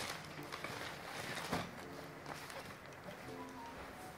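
Soft background music with a few short held notes, under light rustling and handling of paper and a woven wicker basket.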